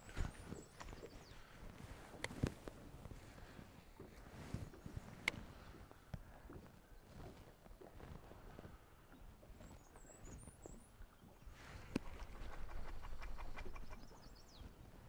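Quiet outdoor ambience on a boat on a lake: a few sharp knocks and clicks scattered through it, and a few faint, high bird chirps near the end.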